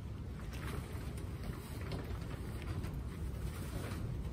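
Low, irregular rumble of wind buffeting the microphone, with a few faint scattered ticks.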